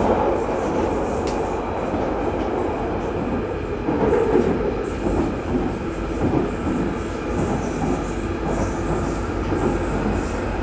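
London Underground Northern Line train (1995 Stock) running at speed through a deep-level tunnel, heard from inside the carriage. It is a steady, loud rumble of wheels on rails and running gear that swells briefly about four seconds in.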